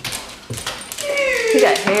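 Dogs in rough play with people, with scuffling and knocks, then a high whine starting about a second in.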